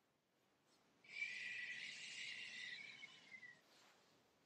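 A slow, audible exhale, a hissing breath that starts about a second in, holds for about two and a half seconds and tapers off.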